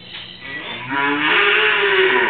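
A cow mooing: one long moo that starts about half a second in and swells to its loudest about a second in.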